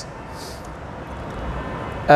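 Steady low rumble and hiss of room background noise, with a brief faint hiss about half a second in.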